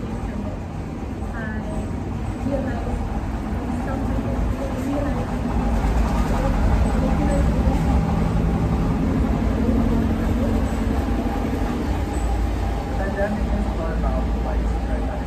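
Low, steady rumble of a motor vehicle's engine, growing louder about halfway through and staying loud, with faint speech underneath.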